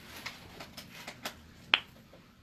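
Pages of a Bible being leafed through while the reader looks for a verse: a few light paper flicks and one sharper click near the end.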